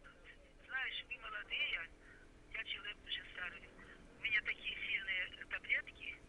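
Faint, thin voice of the other party in a phone call, heard through the handset while they speak in several short phrases.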